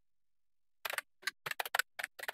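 Computer keyboard typing: a quick run of separate keystrokes that starts just under a second in.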